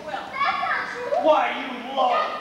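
Young actors speaking dialogue on stage, the voices carrying with animated, rising and falling intonation.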